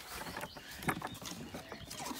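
Scattered knocks and scuffling at a wooden chicken coop as hens step out through its opened pop door onto wood-chip litter, with a couple of sharper clicks about a second in and near the end.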